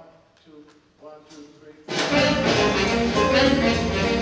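A jazz big band starting a number: a few quiet notes, then about two seconds in the full band of brass, saxophones and rhythm section comes in loud.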